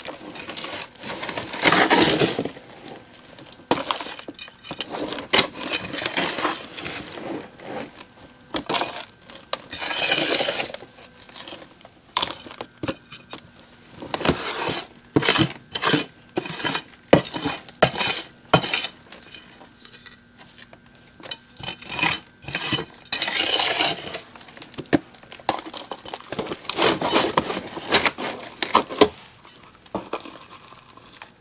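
Potting mix being scooped with a hand scoop from a plastic tub and tipped into small square plastic pots: repeated gritty scraping and rustling of soil, broken by sharp clicks and knocks of the scoop against the plastic tub and pots, with a run of quick clicks about halfway through.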